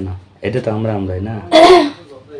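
A person speaking, then one short, loud throat-clearing cough about a second and a half in.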